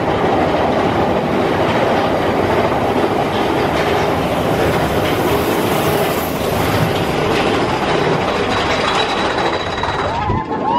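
Big Thunder Mountain Railroad mine-train roller coaster running along its track, heard from aboard: a loud, steady rattle and clatter of the cars and wheels.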